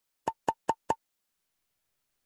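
An edited intro sound effect: four quick identical pops about a fifth of a second apart, all within the first second, each with the same mid pitch.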